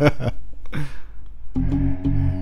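Korg M1 synthesiser playing a layered combination patch: sustained chords over bass, breaking off at the start and coming back in about one and a half seconds in.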